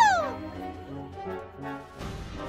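A high-pitched witch's voice ends in a falling shriek that trails off just after the start, over background music with low held notes that carries on alone.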